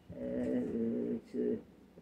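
An old man's voice drawing out a long, steady hesitation 'uhh' for about a second, then a short one.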